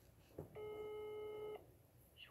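Faint phone ringback tone from a call being placed on speaker: one steady tone lasting about a second, just after a short click. The called number is ringing and no one has answered.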